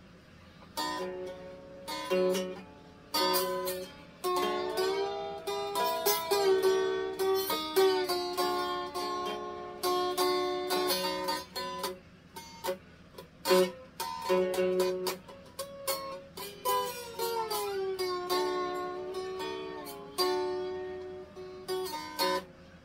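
Small acoustic ukulele strummed by hand, a solo instrumental intro with no singing: chords strummed and left to ring, changing every second or two.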